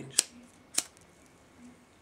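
A handheld cigarette lighter struck twice, two sharp clicks about half a second apart, lighting a cigarette.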